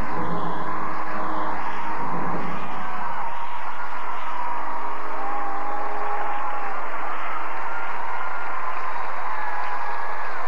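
The closing held notes of a figure-skating program's music, dying away under an arena crowd's steady applause.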